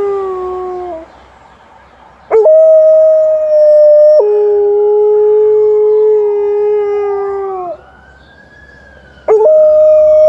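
Alaskan Malamute howling: one howl trails off in the first second, a second starts about two seconds in, holds a higher note, drops to a lower one and fades after several seconds, and a third begins near the end. A siren rises and falls faintly behind the howls: an ambulance the dog is howling at.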